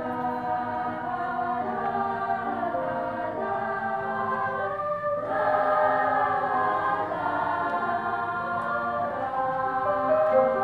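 Youth choir of children and teenagers singing a gentle, slow song in held notes, pausing briefly for breath about five seconds in.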